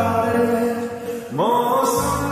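Slowed, reverb-heavy lofi Hindi song: a singing voice holds long drawn-out notes over soft accompaniment, dips briefly, then slides upward in pitch a little past halfway.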